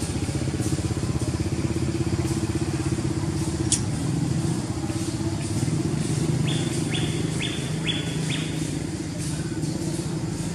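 A small engine running steadily with a low, fast, even pulse. There is a sharp click a little before four seconds in, and a run of five short high chirps between about six and a half and eight and a half seconds in.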